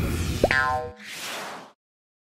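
Cartoon sound effects of an animated channel-logo intro: a springy boing rising in pitch about half a second in, then a short hiss that cuts off suddenly well before the end.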